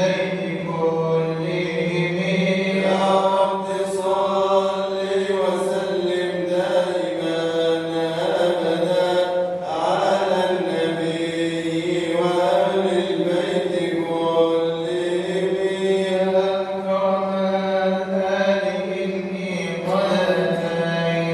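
A man chanting an Arabic devotional poem in praise of the Prophet (madih nabawi) into a microphone, in long, drawn-out melismatic phrases over a steady low drone.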